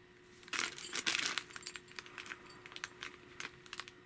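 Clear plastic bag crinkling as it is handled, with a dense burst of crackling about half a second to a second and a half in, then scattered light crackles.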